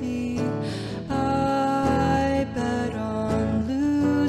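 A woman singing over a strummed electric guitar, with a quick breath in just before a second in, then long held notes.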